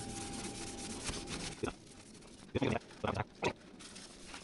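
Paper towel rubbing a stain off a motorcycle's steel exhaust pipe for the first second and a half, then two short grunts a little over half a second apart.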